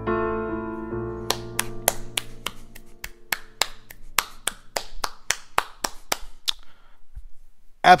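A piano's final chord rings and fades out while one person claps steadily, about twenty claps at roughly four a second, stopping about a second before the end.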